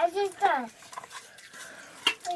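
A young child's two short high-pitched vocal cries, the second falling in pitch, followed by faint light clinks of spoons against steel bowls.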